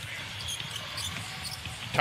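A basketball being dribbled on a hardwood court, heard faintly as a few soft low knocks over a steady background of arena noise.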